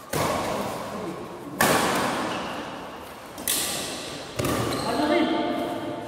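Badminton rally: rackets hitting a shuttlecock four times, each sharp smack trailing off in the echo of a large hall.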